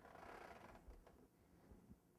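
Near silence: a faint rustle in the first second and a light click of hands handling a decoration against a cake.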